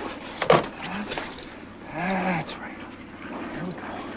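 Short strained grunts of effort, the longest about two seconds in, with a couple of sharp knocks and rattles near the start, over a steady background drone.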